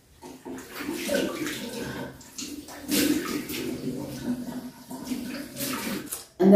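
Water splashing in several uneven bursts as cleanser is rinsed off a face with handfuls of water at a sink, in a small, echoing tiled bathroom.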